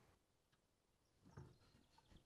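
Near silence: faint room tone, with one faint short sound about a second and a half in.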